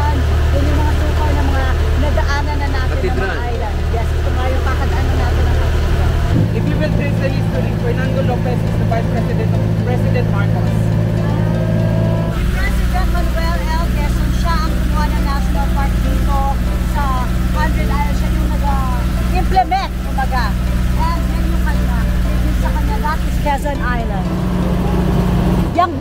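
Outrigger boat's engine running steadily, its low hum shifting to a different note about six seconds in and again about twelve seconds in. Voices talk over it.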